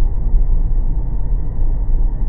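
Road noise inside a moving car: a steady low rumble of tyres and engine.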